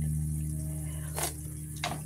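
Adobo sauce sipped from a metal spoon: a short slurp about a second in and another brief one near the end, over a steady low electrical hum.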